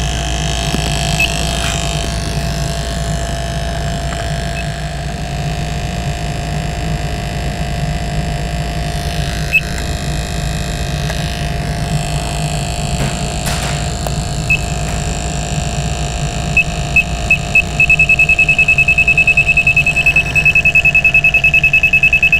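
Handheld CO2 leak detector beeping: scattered single high beeps that come closer together, then rapid steady beeping over the last few seconds as its probe picks up CO2 escaping from the A/C system's lower suction hose at the compressor, a sign that the hose is leaking. A steady low hum runs underneath.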